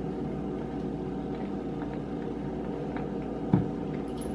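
Steady hum of room background, with one short knock about three and a half seconds in as the silicone top of a Chef'n SweetSpot ice cream sandwich maker is pressed down and clipped onto its base on the wooden counter.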